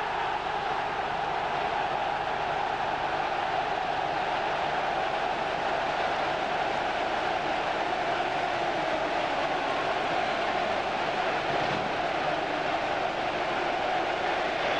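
Stadium crowd noise at a football match: a steady, loud din of a large crowd, without sudden swells.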